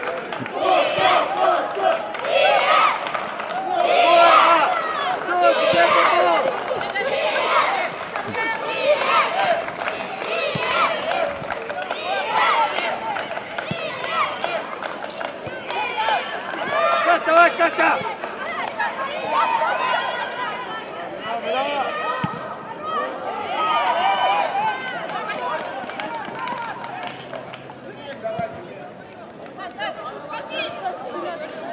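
Voices talking almost throughout, growing quieter over the last few seconds.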